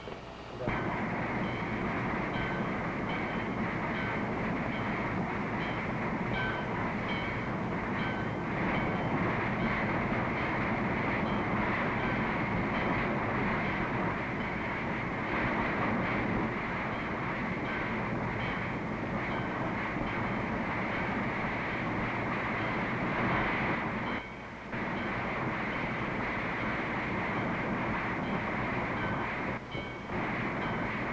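Steady rushing noise of a passenger train at a station, continuous, with a brief drop about three-quarters of the way through.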